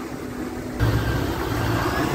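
Steady low rumble of a vehicle engine running, jumping louder about a second in.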